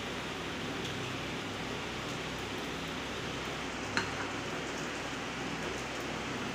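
Masala dosa sizzling in oil and butter on a hot tawa: a steady, even hiss, with one faint click about four seconds in.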